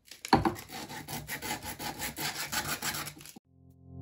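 Sandpaper rubbed by hand over a small 3D-printed owl figure in quick back-and-forth strokes, smoothing the print's surface before painting. The rubbing cuts off about three and a half seconds in, and electronic music fades in.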